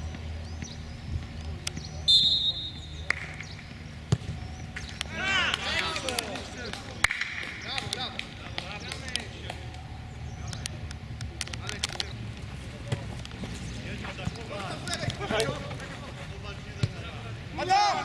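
Outdoor football pitch sound: players' shouts and calls, the thud of the ball being kicked several times, and a short shrill referee's whistle blast about two seconds in.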